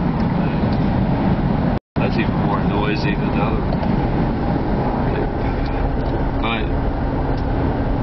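Steady road and wind noise inside a moving car's cabin with the sunroof open, cut by a brief dropout to silence about two seconds in.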